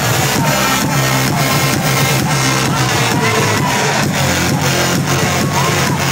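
Electronic dance music from a live DJ set playing loud over a nightclub sound system, with a steady driving beat at about two beats a second.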